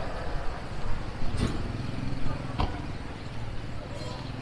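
Busy city street ambience: a steady low rumble of road traffic with passing pedestrians' voices, and two short sharp clicks a little over a second apart.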